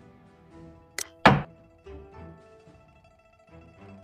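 Soft background music, with a small click about a second in and, just after, a loud wooden clack: the digital xiangqi board's sound effect for a piece being moved and set down.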